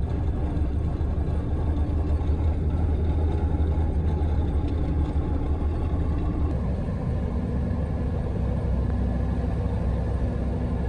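Military truck driving at steady speed, its engine and road rumble heard from inside the cab: a constant deep drone. The engine note shifts slightly lower about two-thirds of the way through.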